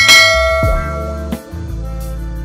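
A bell-chime notification sound effect, struck once at the start and ringing out over about a second, over background music with a deep bass beat.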